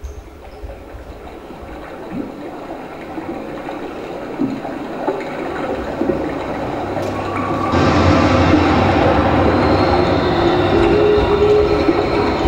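Recorded train sound effect, a steady rumbling rail noise that grows louder and steps up sharply about two-thirds of the way through.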